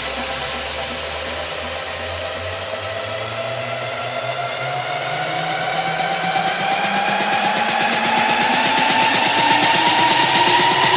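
A build-up in a progressive house DJ mix. A synth chord slowly rises in pitch over a noisy sweep and a fast pulse, getting louder toward the end.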